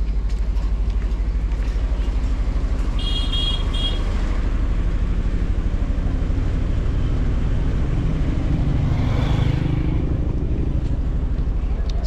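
Street traffic: a steady low engine rumble, with a few short high beeping toots about three seconds in and a vehicle passing close, its engine swelling and fading, around nine seconds in.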